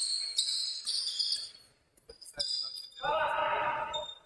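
Basketball shoes squeaking on a gym's wooden floor in several short high squeaks, with a basketball bouncing during play. A voice calls out briefly near the end.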